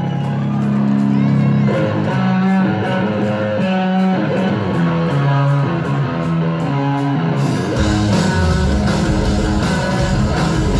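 Live rock band, recorded from the crowd: an electric guitar plays a picked melodic intro over a steady high tick keeping time. Drums and bass come in together with the full band about eight seconds in.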